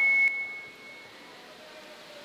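A single high, steady ringing tone from a handheld microphone through the hall's sound system, the ring of audio feedback, dropping sharply after a moment and fading out about a second in. Faint room tone follows.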